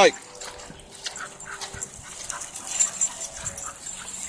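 Overheated bull terrier making faint, short whimpering sounds, several times and irregularly spaced.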